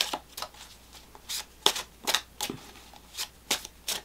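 A deck of tarot cards being shuffled by hand: a run of about a dozen short, irregular flicks and snaps of card stock.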